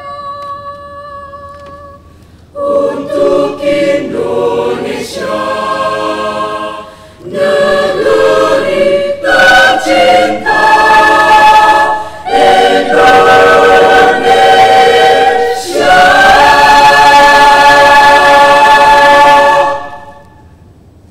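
Mixed school choir singing a cappella: a soft held chord fades, then the full choir comes in loudly a couple of seconds in and sings several phrases. It closes on a long, loud held chord that the singers cut off together near the end.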